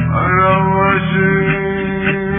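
Song: a male voice holds one long sung note over a steady low accompaniment.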